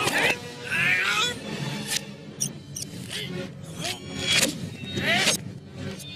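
A film soundtrack played backwards: music mixed with reversed voices, with several sharp knocks in the middle.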